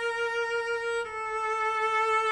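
Cello played with long, slow bowed notes: one sustained note steps down to a slightly lower one about a second in.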